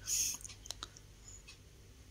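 A short breathy hiss, the narrator drawing breath, then faint room tone with two small clicks a little under a second in.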